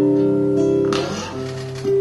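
Nylon-string guitar playing solo: a sustained chord rings and fades, then new notes are plucked about a second in and again near the end.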